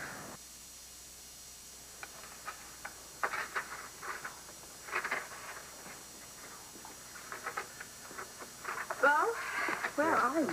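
Scattered light clinks and clatters of hand tools as someone works on an air-conditioning unit, in a quiet room. Near the end comes a short wavering pitched sound.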